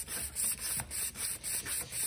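Sandpaper on a sanding block rubbing back and forth across an engraved brass clock dial plate, a rasping hiss in quick regular strokes of about four a second, taking the tarnish off the old brass.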